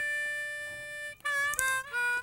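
A reedy, pitched wind tone: one long steady note ends a little past halfway, then three short notes follow at different pitches.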